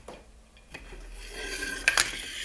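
Wooden rifle handguard sliding along the steel magazine tube and barrel of a Marlin 336W: a scraping rub that starts about half a second in and grows louder, with a small click just before the end.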